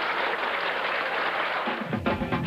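Audience applauding, a steady clapping noise; just before the end it gives way to rock music with guitar cutting in.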